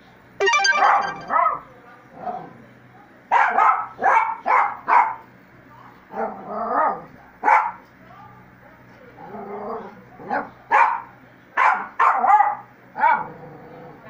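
Miniature pinscher barking at its owner in play, more than a dozen sharp barks in irregular bursts with short pauses between them.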